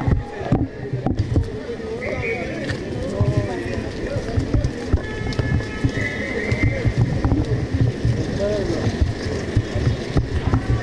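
A walking crowd talking over one another, no single voice clear, with frequent low thumps and two short high steady tones, one about two seconds in and one about six seconds in.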